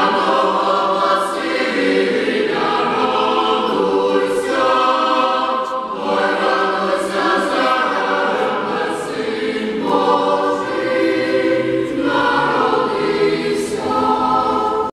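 Boys' and young men's choir singing a cappella in full, sustained chords, with short breaks between phrases every few seconds.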